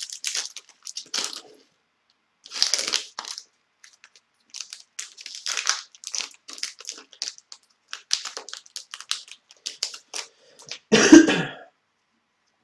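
Foil wrapper of a hockey card pack crinkling and tearing in many short bursts as it is opened and the cards are slid out. A short, loud vocal burst comes near the end.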